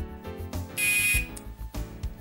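Game-show timer music with a steady beat, cut across about a second in by a short electronic buzzer: the signal that the 60-second round is up.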